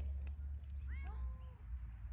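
A cat meows once, about a second in: one drawn-out call that rises and then holds. A steady low rumble runs underneath.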